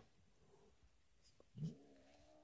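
Near silence, then about a second and a half in a cornered cat starts a low, drawn-out growl.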